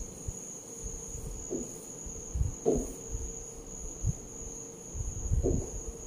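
Chalk drawing wavy lines on a chalkboard: soft, irregular taps and scrapes of the stroke. A steady high-pitched whine runs underneath.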